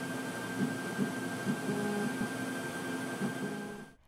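Epilog Zing laser cutter's motorized bed being driven by the arrow keys to set the focus height: a steady motor hum with a thin high whine and low tones that shift in pitch, cutting off suddenly just before the end.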